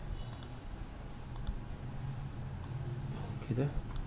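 Computer mouse clicking: a few sharp clicks, two of them quick double-clicks, over a low steady hum.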